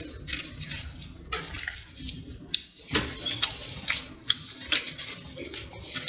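Gloved hands peeling dried leaf wrapping off a sticky leaf-wrapped braised pork parcel: irregular small crackles, clicks and wet squishing of leaf and meat, with plastic gloves rustling.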